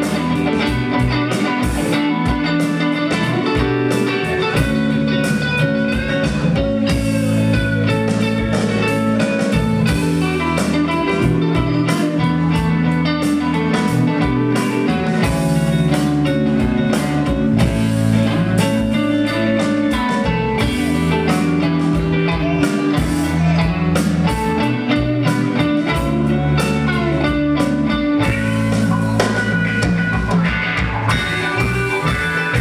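A live rock band playing: electric guitars over bass and a drum kit, loud and continuous.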